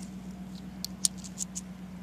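A few light, quick clicks of two quarters and a penny shifting against each other in an open palm, about a second in.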